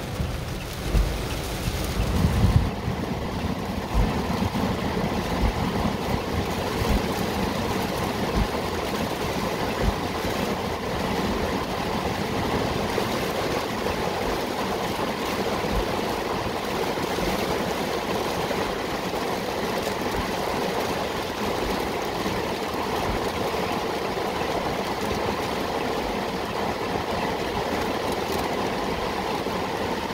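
Heavy rain falling on a car's roof and windshield, heard from inside the cabin as a steady rushing noise. A few low rumbles come in the first few seconds.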